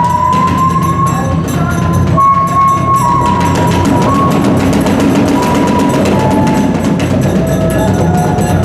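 Hiroshima kagura hayashi music: a bamboo transverse flute holding long high notes that step up and down in pitch, over fast, continuous beating on a large barrel drum and small hand cymbals.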